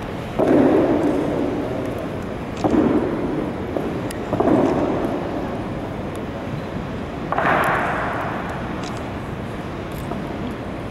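Four sharp impacts from an honour guard's marching drill, stamping boots and rifles striking, each followed by a long echo through a large stone hall; the last one is brighter.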